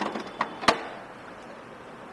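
Three short, sharp mechanical clicks within the first second, the third the loudest, over a low steady background.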